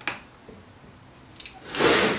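Handling of a cordless drill clamped to a wooden scissor lift: a sharp knock at the start, a couple of light clicks, and a rising rub near the end as the drill and frame are moved by hand.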